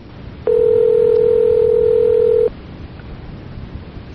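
Telephone ringback tone on the line: one steady two-second ring beginning about half a second in, over a constant phone-line hiss. The called phone is ringing and has not yet been answered.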